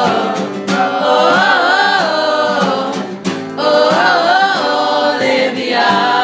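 A group of people singing a song together in unison, accompanied by a strummed acoustic guitar.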